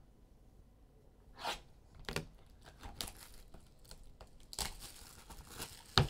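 Clear plastic shrink-wrap being torn off a trading-card box and crumpled in the hands: irregular crinkling and tearing that starts about a second and a half in and gets busier near the end, finishing with a sharp snap.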